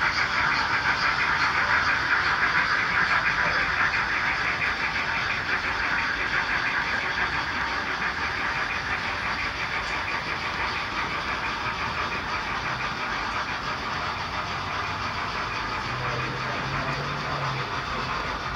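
HO-scale model freight wagons rolling past on model railway track: a steady metallic clatter of small wheels on rail with rapid fine ticking, slowly fading as the train moves away.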